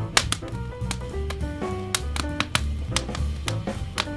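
Smooth jazz instrumental with a bass line and pitched melody notes, mixed with the irregular sharp pops and crackles of a burning wood fire.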